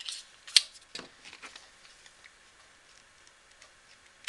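Neck knife clicking against its stiff .090 kydex sheath as it is drawn and handled: one sharp click about half a second in, a softer click a second in, then a few faint ticks.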